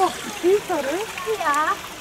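Bare feet wading and splashing through shallow water running over a paved path. Two short voiced calls, about half a second and a second and a half in, are louder than the water.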